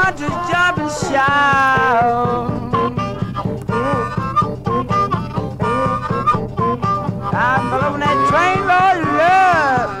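Downhome Chicago blues from a 1950 record, in a low-fi transfer: harmonica wailing in bending notes over guitar and a steady drum beat, the harmonica strongest at the start and again near the end.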